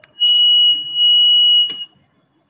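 An electronic beeper sounding two loud, steady high-pitched beeps, the second about twice as long as the first.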